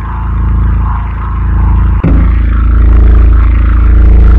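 A loud, low, droning sound-design tone made of many layered pitches, wavering slightly. It breaks off for an instant about two seconds in, then comes back louder.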